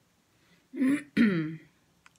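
A woman clearing her throat: two short bursts about a second in, the second falling in pitch.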